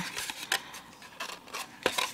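Cardstock rustling softly, with a few sharp clicks as a paper tab is worked down through a slot in a pop-up card piece; the loudest click comes near the end.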